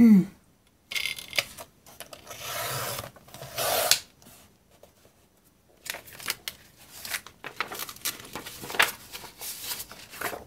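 Fiskars sliding paper trimmer cutting paper: the blade carriage is drawn along the rail in a short stroke about a second in and a longer one from about two to four seconds in. After that, sheets of paper are handled with irregular rustles and light taps.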